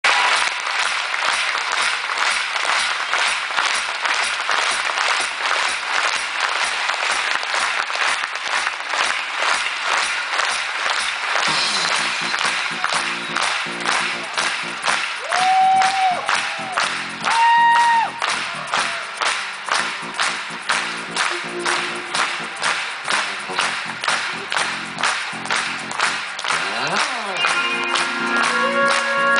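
Concert audience clapping in a steady rhythm. About eleven seconds in, the band's intro starts: held instrument notes, with a couple of higher notes that slide into pitch, under the continuing clapping.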